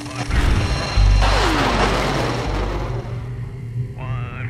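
A loud boom about a second in, with a deep rumble that dies away over the next two seconds, heard over background music.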